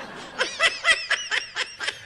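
A person laughing: a quick run of short, high-pitched laughs starting about half a second in.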